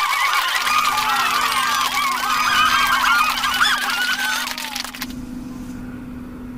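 A whiteboard being wiped clean: a dense run of squeaks from rubbing on the board's surface that stops about five seconds in, over a steady low hum.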